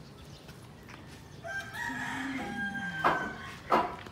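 A rooster crowing once, a long call held in stepped pitches, starting about one and a half seconds in. Near the end, two sharp knocks about two-thirds of a second apart.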